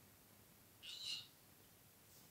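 Near silence, broken about a second in by one short high-pitched chirp with an arched rise and fall in pitch.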